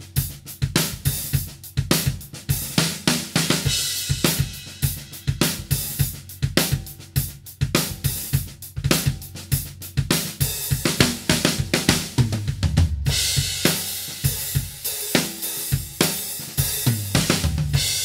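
Drum kit played in a steady groove of snare, bass drum, hi-hat and cymbals, the snare being a large 8x15 maple DTS custom snare drum, on a Gretsch Brooklyn Series kit.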